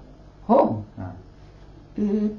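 A man's brief spoken "ho" (Nepali for "yes"), a short rising vocal sound about half a second in, followed by a fainter murmur.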